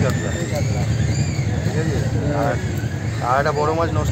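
Men's voices in short bursts over a steady low rumble of road traffic.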